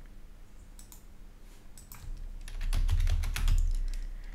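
Computer keyboard: a few scattered clicks, then about halfway in a quick, louder run of keystrokes with low thuds as a terminal command is typed.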